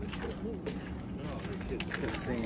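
Indistinct voices of people talking, with a few footsteps knocking on a wooden deck.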